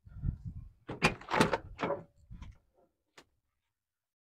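Rear side door of a 1989 Mitsubishi Montero opened by its outside handle: a cluster of sharp clacks and knocks about a second in as the latch releases and the door swings open, then a few small ticks.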